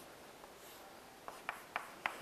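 Chalk drawing on a chalkboard: faint strokes, with a few short taps of the chalk in the second half.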